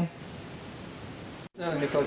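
A steady faint hiss of background noise with no distinct sound in it, cut off by a brief dropout about a second and a half in, after which a voice starts speaking.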